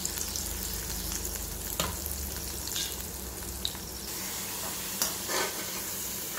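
Spice-coated potato cubes sizzling as they fry in hot oil in a metal kadai, with a metal ladle scraping and clinking against the pan now and then as they are stirred and scooped, the strongest scrapes near the end.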